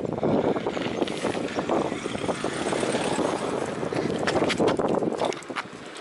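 Steady rush of wind on the microphone with a rattling clatter as the camera is carried over rough asphalt, quieting a little near the end.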